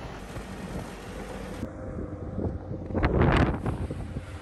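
Polaris RZR side-by-side running on the move, its engine a steady low rumble under wind buffeting the microphone, with a louder rush of wind noise about three seconds in.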